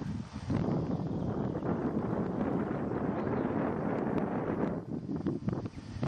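Wind buffeting the camera microphone: a steady rush of noise that eases off near the end, where a few short knocks are heard.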